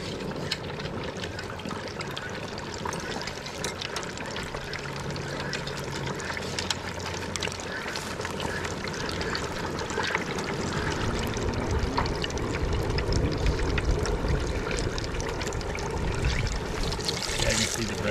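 Breaded bluegill frying in a basket in a pot of hot oil: a dense, crackling sizzle with many small pops, growing somewhat louder in the second half.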